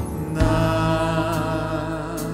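Contemporary praise-and-worship music with held, sustained chords; a new chord comes in about half a second in.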